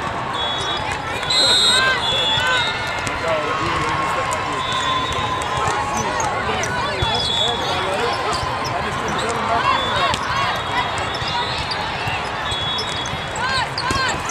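Busy indoor volleyball hall with several matches running at once: overlapping voices of players and spectators, sneakers squeaking on the court, balls being hit and bounced, and a short referee's whistle about a second and a half in.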